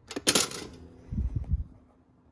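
Cuisinart two-slice toaster being worked by hand: a sharp metallic clatter of its lever and bread carriage, followed about a second in by a few dull low thumps.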